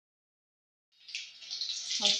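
Silent for about the first second, then hot oil sizzling steadily as a bread cutlet fries in a kadai.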